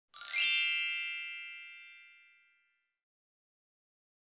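A single bright, high chime, struck once and ringing out with a glittering top, fading away over about two seconds.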